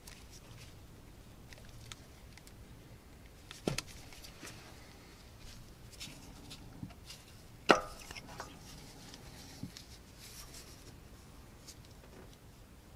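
Ignition coil packs being unplugged and lifted out of a small three-cylinder engine: faint plastic clicks and rattles of connectors and coil bodies. The loudest is a sharp click with a brief ring about eight seconds in, with a smaller knock a little before four seconds.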